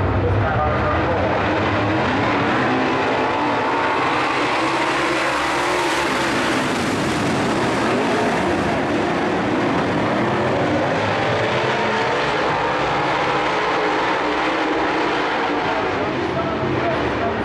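A pack of dirt-track modified race cars' V8 engines at racing speed, pitches rising and falling as the drivers work the throttle through the turn. The sound swells brightest around six seconds in as cars pass close by, then eases as the pack heads away.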